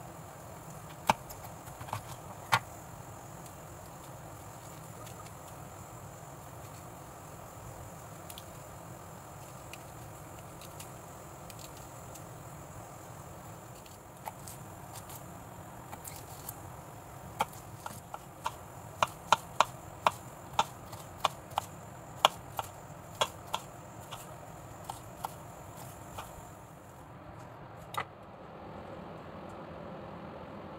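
Kitchen knife chopping bitter gourd on a wooden cutting board: a few sharp knocks of the blade on the board, a lull, then a quick run of about two knocks a second for several seconds.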